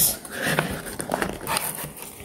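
A small cardboard box being opened and handled by hand: rustling and light knocks, with a sharp click at the start.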